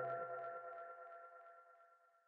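The final chord of an electronic intro jingle ringing out and fading away, with faint echoing ticks, leaving near silence within the first second.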